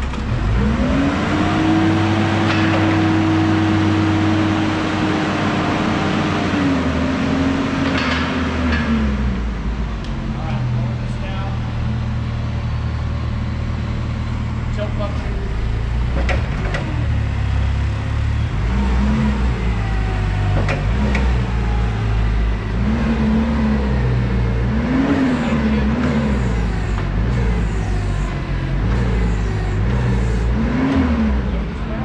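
Toyota 7FGU25 forklift's gasoline engine running: about a second in it revs up and holds a steady higher pitch for several seconds as the hydraulics raise the mast, then drops back toward idle. Later it revs up and down in a series of short blips, with an occasional clank.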